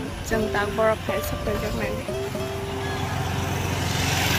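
A woman talking over background music, with a steady low rumble underneath.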